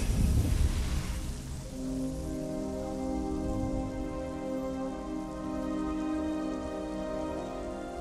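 Film sound effect of a spark-ringed magic portal opening: a low rumble and a crackling fizz of sparks. About two seconds in, a held musical chord comes in over the continuing crackle.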